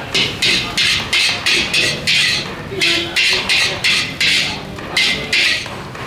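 Steel spatula scraping and tossing food around a hot steel wok in an even rhythm of short, hissy scrapes, about three a second.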